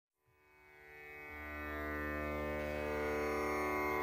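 Indian-style background music fading in about a second in: a quiet, sustained drone of many held tones.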